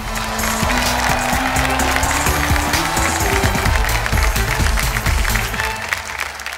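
Studio audience applause over the show's music, which has steady low notes, both easing off near the end.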